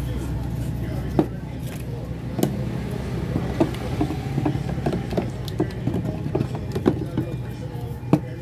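Wooden stirring stick knocking and scraping against the inside of a metal paint can while stirring epoxy enamel paint, irregular clicks a second or so apart, over a steady low hum.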